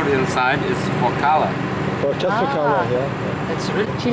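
People talking in conversation over a steady low hum.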